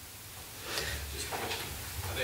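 Muffled, distant voice of an audience member asking a question off-microphone, with some knocking and low rumble, starting under a second in.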